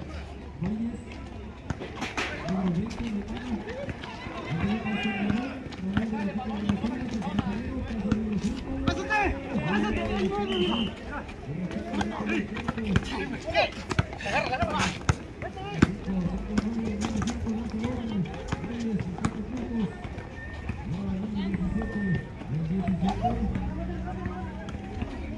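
Voices of people talking on the sideline of an outdoor basketball game, with scattered sharp knocks from the ball and players' footsteps on the asphalt court.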